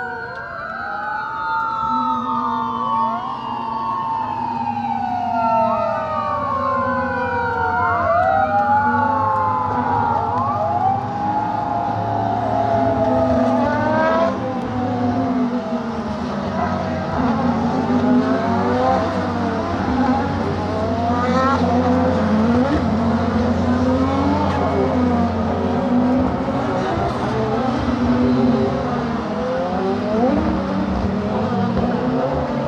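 A pack of SUPER GT race cars on the formation lap, engines running at low pace with repeated quick rev blips and gear changes, getting louder as the field comes round. Over the first ten seconds or so, wailing sirens slide up and down in pitch above the engines.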